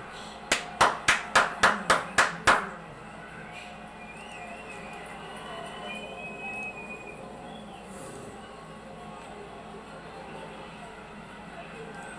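A person clapping, about eight quick, loud claps over two seconds, roughly four a second. A low, steady background with a few faint wavering tones follows.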